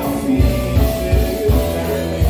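Live band playing: electric guitar, keyboard and drums over a steady beat, with a woman singing into a handheld microphone.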